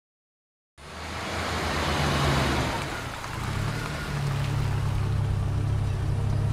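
A car engine running: a steady low drone under a hissing rush. It cuts in suddenly about a second in, after dead silence.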